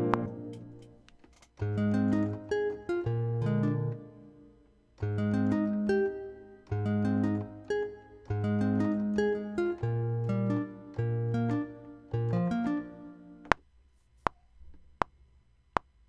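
Software-instrument beat: plucked Plastic Nylon Guitar notes over grand piano chords, a warm synth pad and a low bass, playing in short phrases with breaks. Near the end the music stops and four metronome clicks, about three-quarters of a second apart, count in at 80 BPM.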